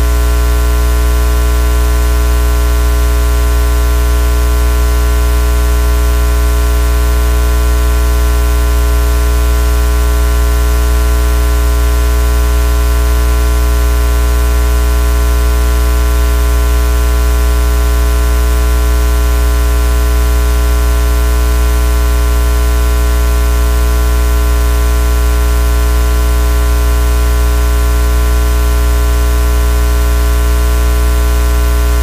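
Loud, unchanging electrical hum and buzz with many steady overtones, over a layer of hiss.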